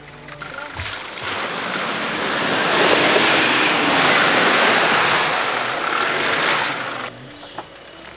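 A Nissan Patrol SUV driving through waterlogged, muddy ruts, its tyres throwing mud and water in a loud rushing, splashing noise. The noise swells to a peak and cuts off sharply near the end.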